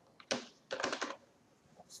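Computer keyboard typing: a short run of quick key clicks, in the first half, as a single word is typed.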